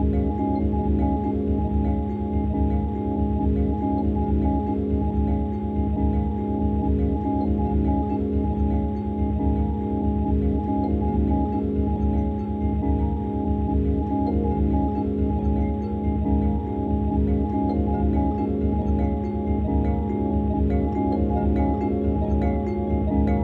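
Background music: sustained tones over a steady low beat.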